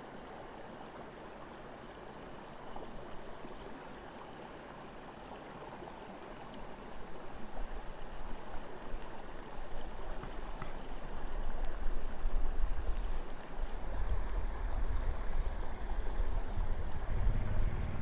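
Stream water running steadily, with a low rumble rising under it from about seven seconds in.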